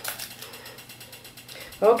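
Rapid, even mechanical ticking in the background, with speech starting near the end.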